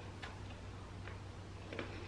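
Faint biting and chewing of an Arnott's Tim Tam Double Coat, a chocolate-coated biscuit: three soft, irregular crunching clicks over a low steady hum.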